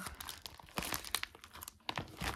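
Clear plastic pocket pages of a trading card binder crinkling and crackling as a page is turned over, in an irregular run of short, sharp crackles.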